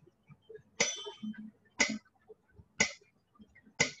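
An electronic keyboard's built-in metronome clicking steadily at 60 beats per minute, one click each second. The click about a second in has a brighter, ringing tone than the others, marking the first beat of the bar.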